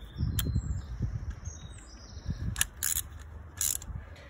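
Ratchet wrench with a spark plug socket clicking in short runs, with knocks from handling the tool, as a new spark plug is run down into the cylinder head.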